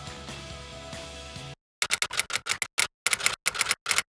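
Background music that cuts off about one and a half seconds in, then, after a short gap, a rapid, irregular run of loud, sharp, crisp clicks, an added sound effect.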